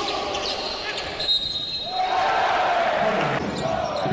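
Basketball game sound in an arena: crowd noise in a large hall with ball and court sounds, the crowd swelling about two seconds in.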